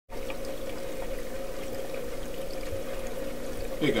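Water trickling and pouring through the rear filter chambers of an Oceanic Biocube aquarium, over a steady pump hum.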